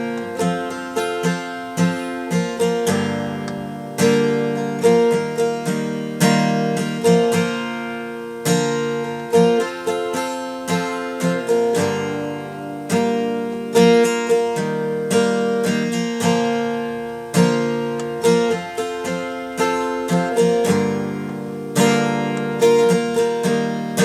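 Acoustic guitar with a capo on the third fret, strummed in a steady down-and-up rhythm through a repeating four-chord progression of G, D, Em7 and Cadd9 shapes, sounding in B-flat. Each chord rings between strokes.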